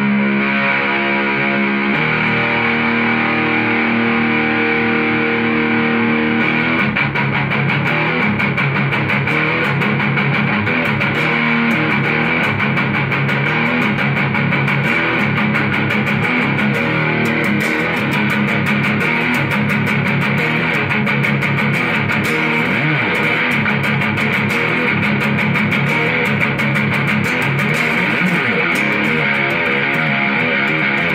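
Custom-built electric guitar with humbucking pickups played through a Mesa/Boogie combo amp: a held chord rings, changes to another about two seconds in, and then gives way to fast, steady rhythmic riffing from about six seconds in.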